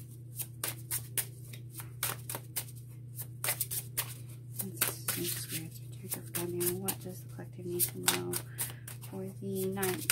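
Tarot cards being shuffled by hand: an irregular run of quick, crisp card clicks, several a second, over a steady low hum.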